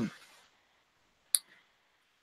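A single short, sharp click a little past halfway through, just after a spoken word trails off.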